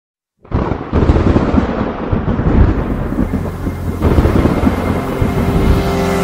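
Channel logo intro sound effect: a loud, thunder-like rumbling crackle that starts suddenly about half a second in and surges again about a second in. Faint musical tones build under it toward the end.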